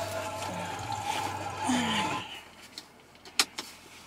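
Inside a car, a seatbelt is drawn across the chest while a steady low hum runs for about two seconds and then stops. Two sharp clicks follow near the end, the second one louder.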